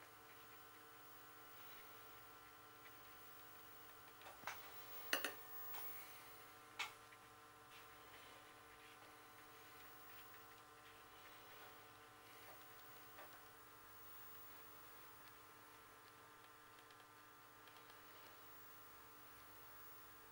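Near silence: room tone with a faint steady hum, broken by a few small clicks or taps about four to seven seconds in.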